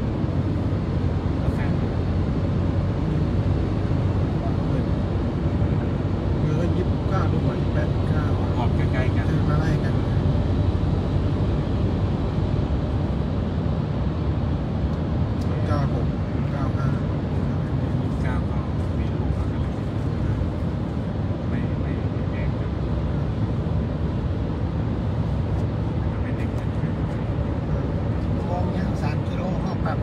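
Steady road and engine noise of a car driving at speed through a long road tunnel, heard from inside the cabin, with faint voices now and then.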